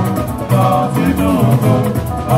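Upbeat dance-band music: guitar lines and singing over a steady drum beat.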